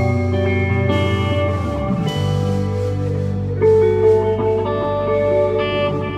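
A live folk-rock band plays electric guitar, bass, violin and drums together. The notes are long and held, the chords change slowly over a strong bass line, and there are only a few drum or cymbal strikes.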